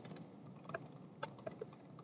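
Computer keyboard being typed on: a quick, uneven run of faint keystrokes as a line of code is entered.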